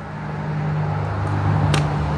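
A low steady hum that grows louder, with one sharp click near the end: the slap of a color guard practice rifle landing in the hand on the catch of a single toss.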